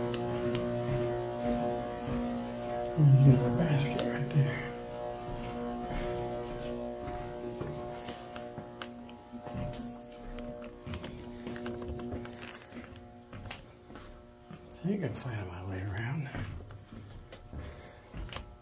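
A steady low hum made of several held tones, fading in the second half. Two short stretches of low, indistinct voice-like sound come about three seconds in and again about fifteen seconds in, with scattered light knocks.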